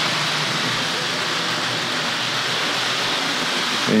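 Tri-ang R.350 Mallard 00 gauge model locomotive and its coaches running round the layout under power: a steady running noise of the electric motor and wheels on the track.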